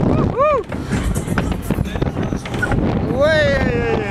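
Rush of air buffeting the microphone on a fast-swinging fairground thrill ride. A rider gives a short cry about half a second in, and a longer cry that rises then falls near the end.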